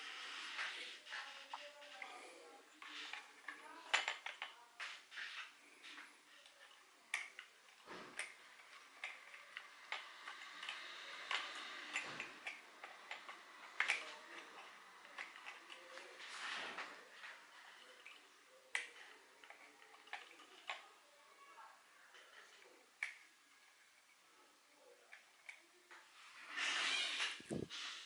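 Quiet handling noises: scattered light clicks and taps of plastic model-kit parts being picked up and fitted, with soft rustling between them.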